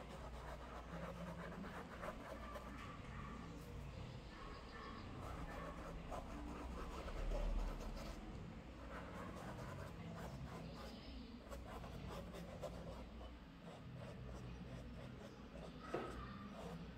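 Faint scratching of a fine paintbrush drawing thin brown paint across a canvas in short strokes, over a low steady room hum that swells briefly about halfway through.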